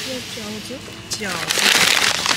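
Plastic packaging of frozen dumplings crinkling and crackling loudly as the bag is lifted out of a supermarket freezer, starting about one and a half seconds in.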